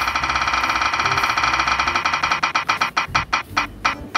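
Spinning prize-wheel ticking sound effect: rapid clicks that slow steadily as the wheel winds down, the ticks spreading out toward the end, over background music.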